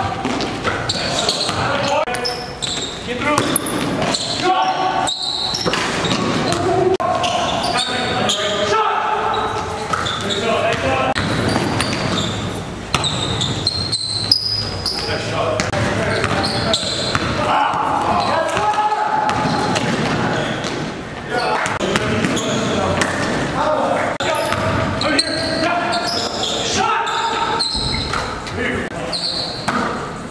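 Basketball bouncing on a gym floor as players dribble during a game, with players' indistinct shouts and chatter echoing in a large gym.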